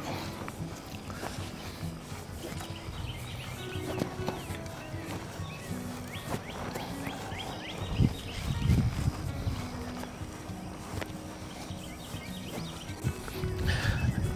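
Outdoor field ambience: wind rumbling on the microphone, with faint high chirps and a single thump about eight seconds in.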